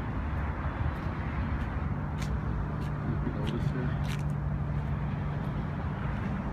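Steady low rumble of motor traffic, with an engine hum that sets in about a second and a half in. A few light clicks sound over it.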